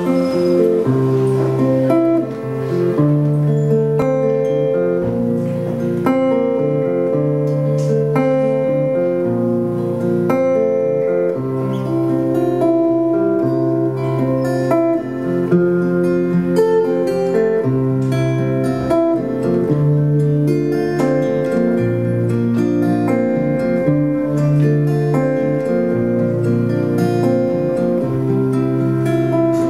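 Two acoustic guitars playing the instrumental opening of a song, distinct picked notes over held low bass notes that change every second or two.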